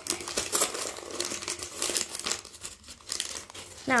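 A torn-open foil-laminate collectible packet crinkling and crackling irregularly as it is handled.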